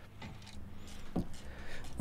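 Faint handling noise of hand tools working on a rear brake caliper: a few light ticks and one sharper click a little past halfway.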